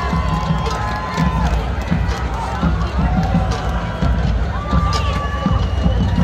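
Marching band playing: drum hits under long held notes, one held at the start and another about five seconds in, with spectators talking close by.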